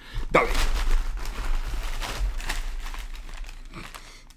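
Paper wrapping and tissue paper rustling and crinkling as a paper-wrapped item is pulled out of a packed box. The rustle is continuous and fades toward the end.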